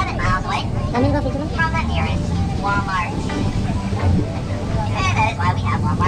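People talking over the steady low rumble of an open-air sightseeing tram that is driving along.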